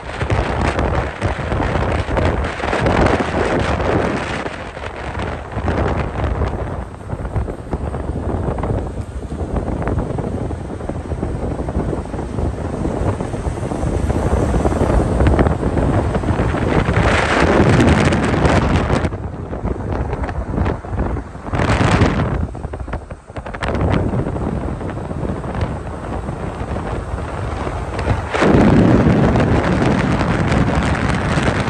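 Wind rushing and buffeting on the microphone of a moving car, over low road and engine noise, with louder gusts a little past halfway and again near the end.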